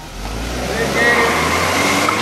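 Volkswagen Tiguan SUV accelerating hard away, engine and tyre noise swelling over the first second, then staying loud.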